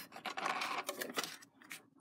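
Card stock being handled and laid flat on a cutting mat: a soft rustle and slide of paper with a few light taps, dying away after about a second and a half.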